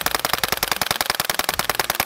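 Suppressed CZ Scorpion 9mm carbine firing a fast, unbroken string of shots as a magazine is emptied; the shots stop right at the end.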